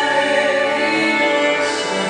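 A woman singing live to her own acoustic guitar with violin accompaniment, holding long notes over the strings.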